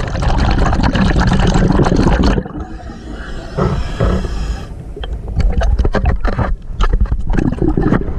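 Water gurgling and bubbling against a submerged camera, with crackles and knocks as it moves. It drops quieter for about two seconds in the middle, then the crackling comes back.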